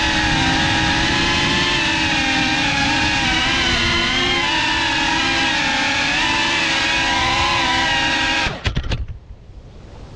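FPV quadcopter's electric motors and propellers whining, the pitch wavering with the throttle. About 8.5 s in the whine cuts off with a few sharp knocks as the drone comes down on the road, leaving faint wind noise.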